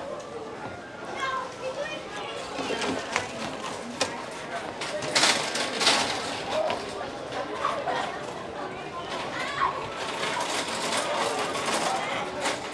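Crowd chatter of many people talking around outdoor tables, with two short, loud bursts of noise about five and six seconds in.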